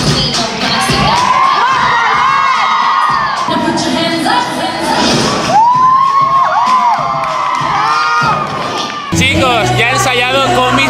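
A group of young voices cheering and whooping over music, with high shouts that rise and fall. Near the end the shouting cuts off and music with a steady bass takes over.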